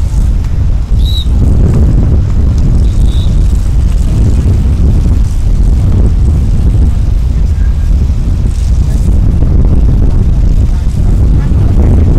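Wind buffeting the microphone: a loud, steady low rumble that covers everything else, with two short high chirps about one and three seconds in.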